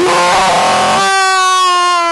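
A loud single held note at one pitch, harsh and noisy for about the first second, then clear and steady.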